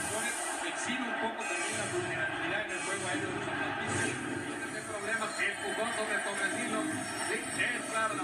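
Sound of a televised football broadcast playing from a TV set and picked up in the room: stadium crowd noise mixed with music.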